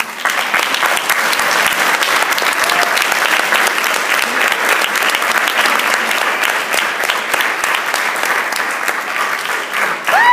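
Audience applause: many hands clapping steadily right after a live saxophone and bass performance ends.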